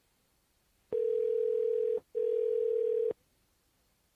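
Telephone ringing tone heard on the caller's end of an outgoing call, the sign that the line is ringing at the other end: a steady tone for about a second, a brief break, then about another second of the same tone.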